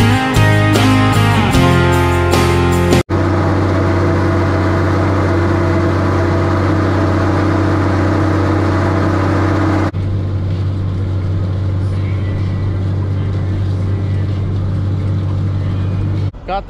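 Rock music with a steady beat for about three seconds, then a sudden cut to a Case IH tractor's diesel engine running steadily under load as it pulls a chisel plow. A second cut comes about ten seconds in, and the engine drone carries on.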